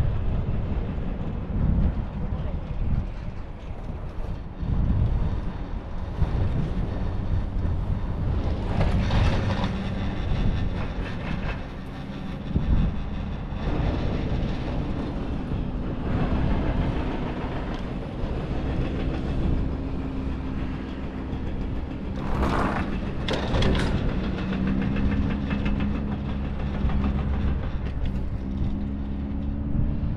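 Ride on a Doppelmayr detachable quad chairlift: a steady rumble with wind on the microphone, a hum that comes in about halfway and slowly rises, and a quick run of clacks at about 9 seconds and again a little past two-thirds of the way through as the chair rolls over a tower's sheave wheels.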